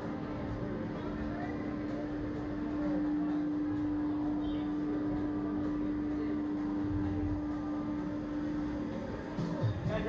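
Steady machine hum from the slingshot ride's equipment as the riders wait to be launched, stopping about nine seconds in, over background music and faint voices.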